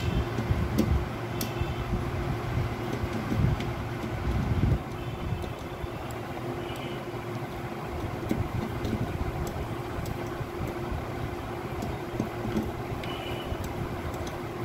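A few light clicks and small squeaks as a screwdriver works screws in the plastic frame of a photocopier fuser unit, over a steady mechanical background hum.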